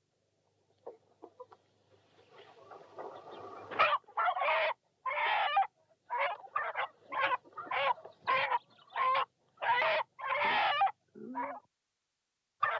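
A chicken squawking and clucking while being held, in a run of loud calls about half a second apart that starts about four seconds in.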